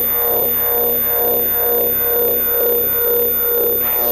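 Electronic music played from cassette: a steady synthesizer drone under a repeating filtered synth figure that sweeps downward about twice a second, with a rising swoosh near the end.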